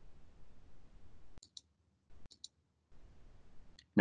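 Computer mouse clicks over a faint open-microphone hiss: a few short, sharp clicks in two quick pairs, then one more near the end, while the hiss cuts in and out.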